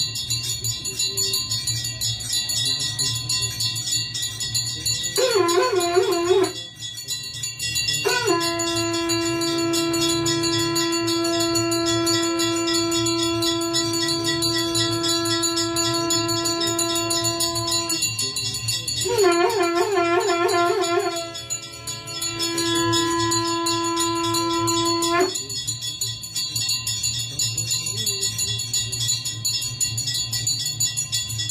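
A conch shell (shankh) is blown in two long blasts, the first starting about five seconds in and the second about nineteen seconds in; each opens with a wavering, warbling note and then holds one steady note, the first for about ten seconds and the second for about four. Temple bells ring without a break for the aarti throughout.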